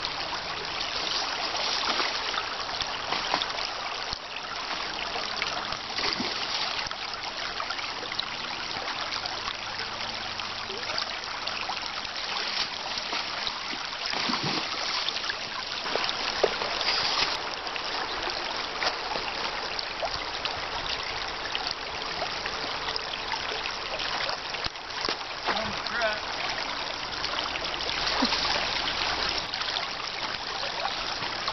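Shallow creek water running and trickling steadily.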